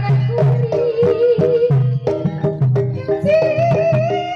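Traditional ebeg dance music played loud: steady drum strokes and struck pitched percussion under a wavering sung vocal line that moves higher near the end.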